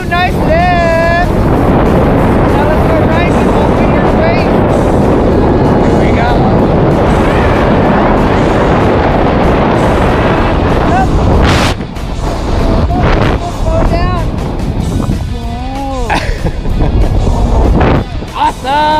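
Wind rushing over the camera microphone during a tandem parachute descent, a loud steady roar that breaks off sharply about eleven seconds in and turns quieter and gustier, with music underneath.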